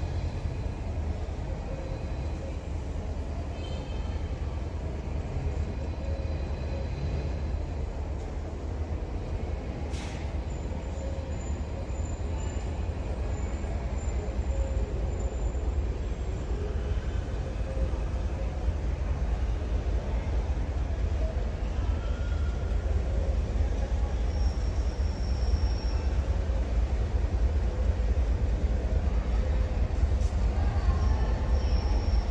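G8 diesel-electric locomotive approaching down the line, a low engine rumble growing steadily louder.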